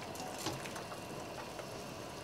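Faint water sounds from a pot of boiling water as blanched potato slices are lifted out with a wire skimmer, dripping, with a small knock about half a second in.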